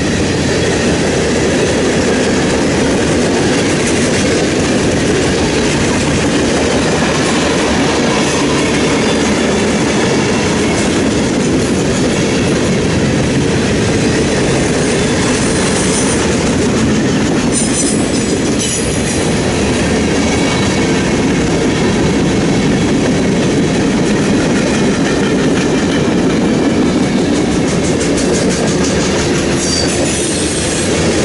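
Freight cars of a mixed freight train rolling past close by: a steady, loud rumble of steel wheels on the rails.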